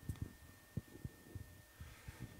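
Handling noise from a handheld microphone being fitted back onto its stand: a few soft, low thuds and knocks at irregular intervals, over a faint steady hum.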